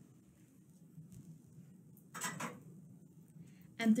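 A quiet room with one short scrape or clatter of things being handled about two seconds in, and a fainter knock about a second in.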